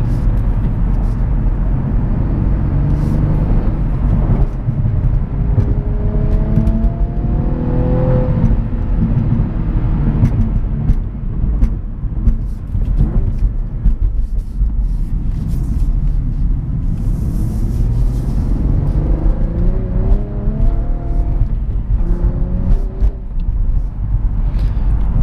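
Cadillac ATS-V's twin-turbo V6 heard from inside the cabin over steady road and tyre rumble, with the six-speed manual driven and active rev matching switched off. The revs climb twice, about six to eight seconds in and again near the end.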